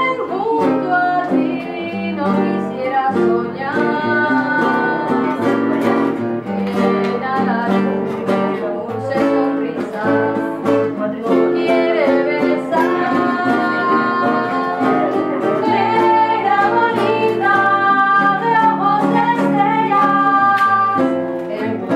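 A woman sings a Cuban filin-style song to acoustic guitar accompaniment, plucked and strummed. Near the end a second woman's voice joins in.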